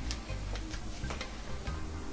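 Background music with a ticking beat over a low, steady bass.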